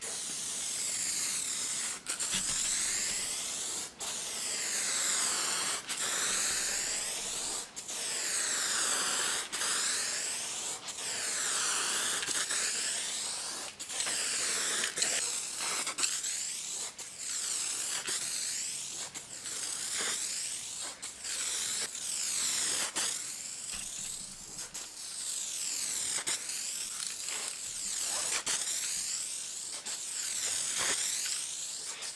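Aerosol spray can of 2K clear coat spraying in a steady hiss, cut by short breaks every one to two seconds as the nozzle is released between passes. The hiss rises and falls in tone as the can sweeps back and forth across the panel.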